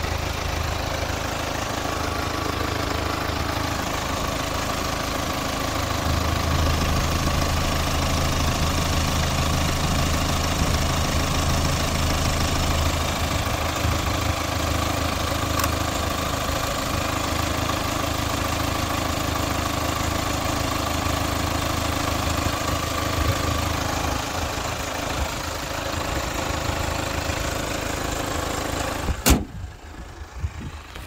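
Kia Sorento's CRDi common-rail diesel engine idling steadily with the hood open. A single sharp knock comes just before the end, after which the engine sound drops away.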